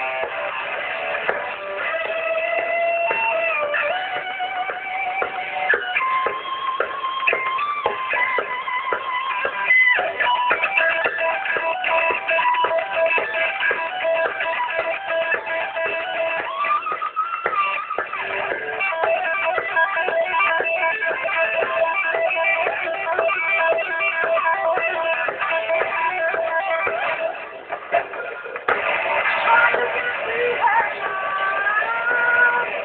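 Live heavy metal band playing: a distorted electric guitar lead with long held notes, some bending up and down, over drums. The music dips briefly near the end.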